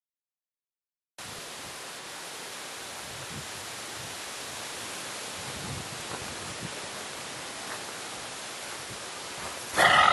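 Steady, even hiss of outdoor background noise, starting about a second in after dead silence. A much louder sound breaks in at the very end.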